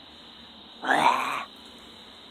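A person's short wordless vocal sound, about half a second long, a little under a second in, over a steady background of crickets chirping.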